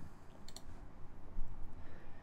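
A few sharp clicks from computer input: one small cluster about half a second in and another near the end, over low steady room noise.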